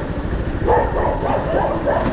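A dog barking, a run of short barks starting about half a second in, over the steady low rumble of a motorcycle being ridden.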